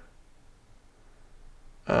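A quiet pause with only faint room tone, and a man's speech beginning near the end.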